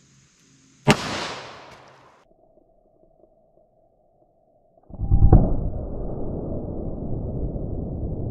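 A single shot from a Taurus 605 snub-nosed revolver firing standard-pressure .38 Special, a sharp crack about a second in that rings off quickly. About five seconds in comes a deep, drawn-out rumble, loudest at its start, that carries on to the end: the slowed-down sound of the shot and the bursting melon.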